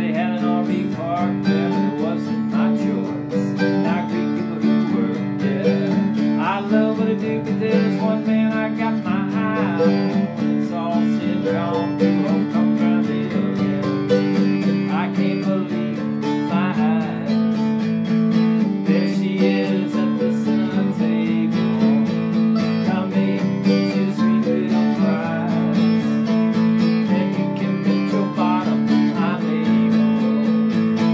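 Acoustic guitar strumming chords under a fast picked mandolin melody, an instrumental break in a country-style song with no singing.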